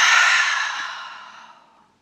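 A woman's long, deep exhale through the open mouth, a deliberate sigh-like out-breath released at the end of a calming breathing exercise. It is loudest at the start and fades away over about a second and a half.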